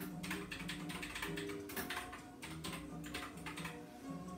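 Quick, irregular clicking and clattering of small objects as someone rummages through workshop supplies, over background music with long held notes.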